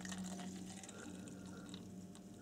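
Water poured in a thin stream from a plastic bottle into a plastic cup, faintly trickling and splashing as the cup fills.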